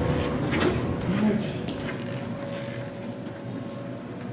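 Footsteps on a hard stone floor as people walk out of an elevator car, a few separate steps, over a steady low hum.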